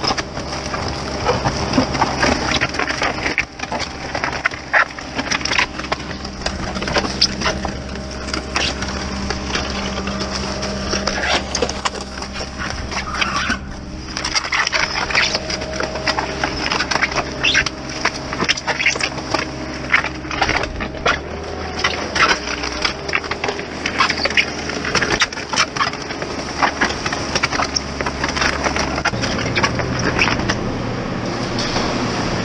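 Paper cement bags being torn open and emptied into a concrete mixer bucket, with a dense, irregular crackle and rustle of paper, over the steady hum of a running engine. The engine note picks up near the end.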